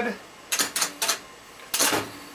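Pinball drop targets clacking: three sharp plastic-and-metal clacks in quick succession about half a second in, then one more near the end, as targets in the bank are pushed down by hand.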